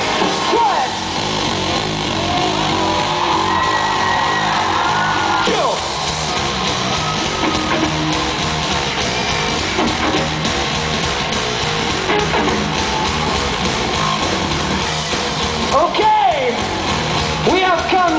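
A live rock band playing loudly: electric guitar, bass guitar and drums, heard from among the audience.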